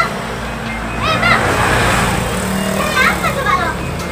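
High-pitched voices calling out, once about a second in and again about three seconds in, over a steady low background hum.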